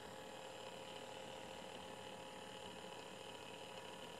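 Sunbeam Mixmaster stand mixer running on a high setting, its beaters whipping a thin cake batter, heard as a faint steady hum.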